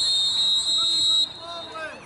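Referee's whistle blown in one steady blast of about a second and a half, signalling the restart of play.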